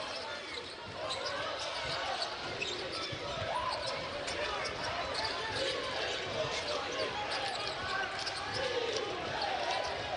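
A basketball being dribbled on a hardwood court, the bounces heard over the steady murmur of an arena crowd and players' voices.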